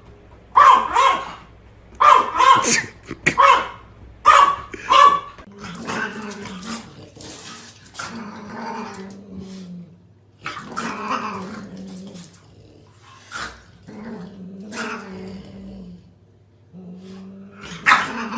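A small dog, a Yorkshire terrier, barks in quick sharp bursts for about the first five seconds. Then a dog, a French bulldog, gives a series of low growls, each lasting about a second.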